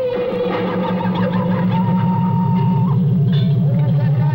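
Electronic music: a loud, steady low drone under held higher tones that slide in pitch.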